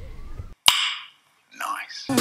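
A single sharp click or snap followed by a short fading hiss, set in sudden silence: an edited-in sound effect.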